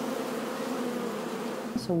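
Many honeybees buzzing as they fly around a wooden hive entrance: a steady, low hum that stops just before the end.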